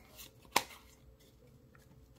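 Trading cards being handled: a faint tick, then one sharp click a little after half a second in as a card is flicked through the stack. Otherwise quiet.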